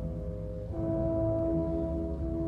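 Euphonium playing a slow, sustained solo melody over low band accompaniment, moving to a new held note about three-quarters of a second in.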